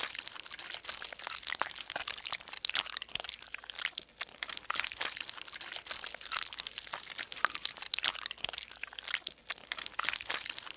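Paper cutouts being handled and pressed against grid paper: continuous crinkling and rustling of paper with many small crackles.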